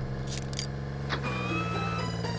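Cartoon sound effects of dashboard switches being pressed: a couple of short clicks, then a thin steady electronic tone as the emergency floodlight is switched on, over background music with a low steady drone.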